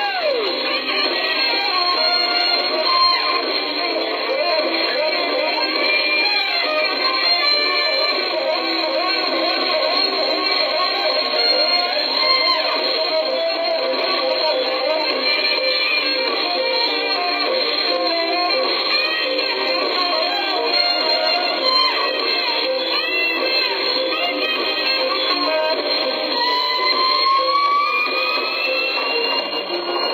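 Live smooth-jazz band playing, with guitar prominent. It sounds thin, with little bass or top end, and a long note bends upward near the end.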